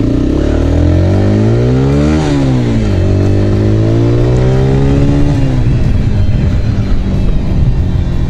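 Honda CBR125R's single-cylinder four-stroke engine accelerating: the revs climb, drop sharply at a gear change about two seconds in, climb again, then fall off and hold steadier near the end. The bike is geared for acceleration with a 14-tooth front sprocket in place of the stock 15-tooth.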